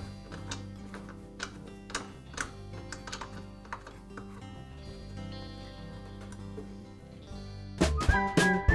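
Soft background music with steady low tones, over light, irregular clicks and taps of metal, about two a second, thinning out after about four seconds, as the miter saw's extension fence is handled and its thumb screw tightened.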